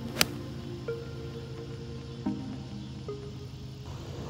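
A single sharp crack of a seven iron striking a golf ball just after the start, over background music with slow held notes.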